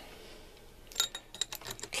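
A steel gib strip clinking against the cast-iron mill head and its dovetail as it is handled: a quick run of light metallic clicks and taps starting about halfway through.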